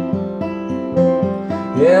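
Acoustic guitar picked in a steady, even pattern of held notes between sung lines, with a man's voice coming back in at the very end.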